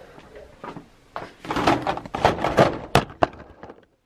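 Metal drawer of a red tool-chest-style cabinet being tried out, knocking and rattling for a second or so, then two sharp clicks near the end.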